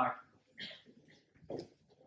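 Chalk writing on a blackboard: a few faint, short scrapes and taps of the chalk stick, with a slightly louder stroke about one and a half seconds in.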